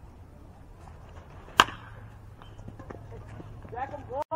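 A metal baseball bat hitting a pitched ball: one sharp, ringing ping about one and a half seconds in.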